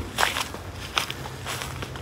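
A few soft footsteps on grass, faint against outdoor background noise.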